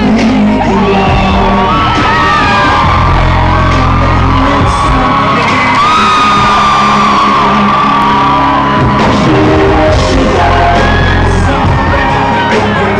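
Loud live pop-rock music: a band playing and a male lead singer on a handheld microphone, with fans screaming and whooping over it, heard from within the audience in a large hall.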